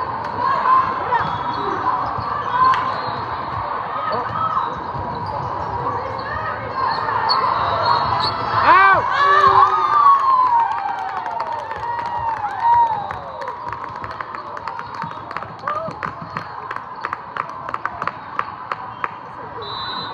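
Indoor volleyball rally in a large, echoing hall: ball hits and athletic shoes squeaking on the court, over voices of players and spectators. A quick run of short sharp claps comes near the end.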